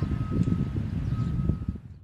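Wind buffeting the microphone outdoors: a low, uneven rumble, with a faint steady high tone coming and going.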